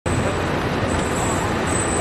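Steady road traffic noise from a busy city street, with a thin, high-pitched whine running on top.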